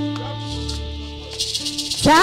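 Church instrumental music: held chords over a low bass note, with a handheld shaker rattling in quick strokes, busiest near the end.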